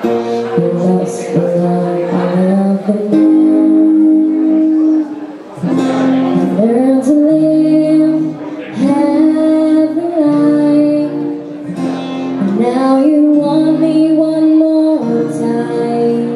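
Woman singing live into a handheld microphone over band accompaniment, holding long notes and sliding up into new phrases.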